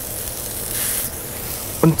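Veal fillet medallion sizzling steadily as it sears on a bed of heated coarse salt in a dry, very hot pan, with no oil or butter yet.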